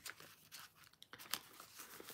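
Faint rustling and a few light clicks of a paper planner being handled as a zipper bookmark is slipped between its pages.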